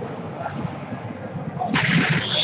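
Volleyball play in an echoing indoor sports hall: a background murmur of players' voices and court noise, then a sudden sharp, noisy burst near the end, like a ball being struck.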